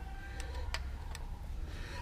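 Three faint metallic ticks, a third of a second or so apart, as a screwdriver tip is set onto the valve-clearance adjuster screw of a rocker arm on the Chevy Spark's cylinder head, over a low steady hum.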